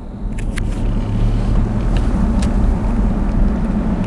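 Car engine and tyre noise heard from inside the cabin while driving slowly, a steady low hum with a few faint clicks.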